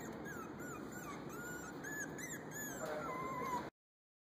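Chihuahua puppy whimpering: a string of short, high whines, then a longer, lower whine near the end, before the sound cuts off suddenly.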